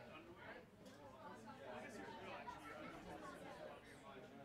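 Faint, distant chatter of several voices, from players and onlookers around a rugby pitch.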